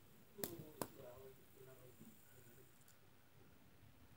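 Two quick clicks about half a second apart, from fingers flicking and handling a plastic fidget spinner, then near silence with a faint murmur of voice.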